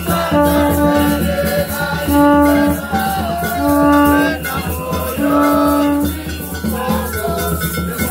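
A conch shell blown in four short held blasts on one steady note, about every second and a half, over rattles shaken in a continuous rhythm and some singing.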